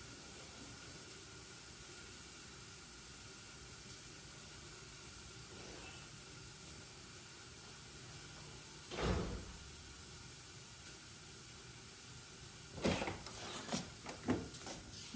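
Faint steady room hiss, broken by a single dull thud about nine seconds in. Near the end, a quick series of clicks and knocks: a wooden door's metal lever handle and latch being worked as the door is opened.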